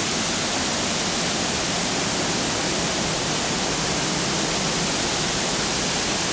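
Large waterfall in heavy flood flow, a broad sheet of muddy water pouring over a rock ledge with a loud, steady rushing roar.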